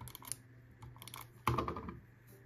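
Handheld adhesive tape runner rolled along a narrow paper strip, giving a run of small crackly clicks, followed by a louder brief scrape of paper being handled about a second and a half in.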